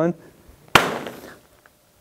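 A laser-cut gingerbread house, held together with hot glue, thrown down and smashing on a plastic-sheeted floor: one sharp crash about three-quarters of a second in, with the crumbling pieces dying away within half a second.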